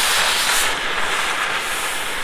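Electric arc welding on steel planter brackets: a steady, loud sizzling hiss of the arc.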